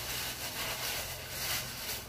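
Tissue-paper wrapping rustling and crumpling as it is torn off and balled up by hand.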